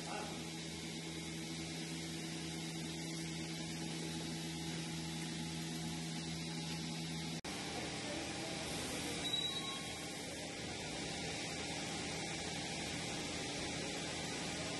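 Steady mechanical hum of milking-parlor machinery running. A low tone sits under it until a brief dropout about halfway through, and a noisier steady hum carries on after that.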